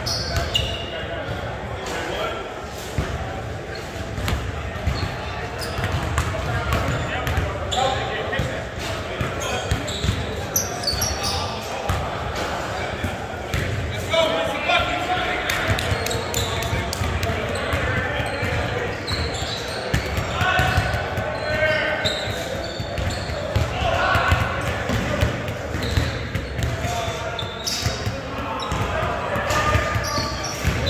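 A basketball bouncing and dribbling on a hardwood gym court, with short knocks throughout, in a large hall with reverberation. Shouts and calls from players and onlookers come and go, thickest in the middle of the stretch.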